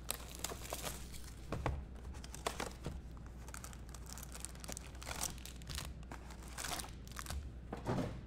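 Foil-wrapped trading-card packs crinkling as hands pull them from a cardboard hobby box and stack them on the table, with the box's cardboard flap rustling. Irregular crinkles and small taps run on without a break.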